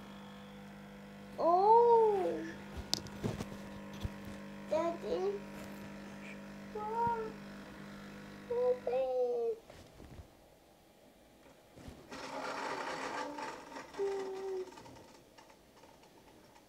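Bosch Tassimo Style pod coffee machine's pump humming steadily while it dispenses the espresso shot into the milk of a latte, then stopping about nine seconds in as the brew ends. A young child babbles over it, and a short noisy spell follows a few seconds after the hum stops.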